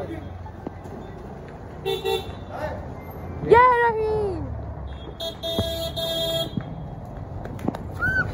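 Vehicle horns in street traffic: a short toot about two seconds in, then a steady horn blast lasting a little over a second past the middle, over a low traffic rumble.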